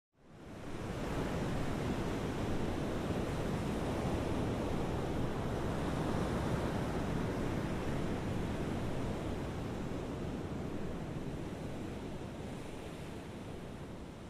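Ocean waves breaking: a steady rush of surf that fades in over the first second and eases slightly toward the end.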